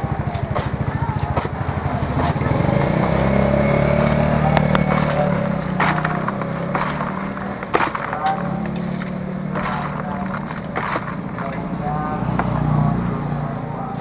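A steady low drone like a nearby idling engine, under background voices, with a few sharp clinks in the middle as small freshwater clams are scooped with a metal spoon.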